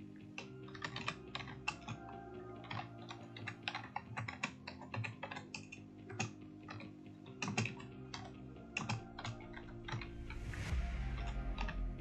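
Typing on a computer keyboard: a run of irregular keystroke clicks as a line of code is entered.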